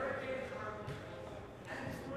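Faint, indistinct voices over low room noise in a large indoor hall.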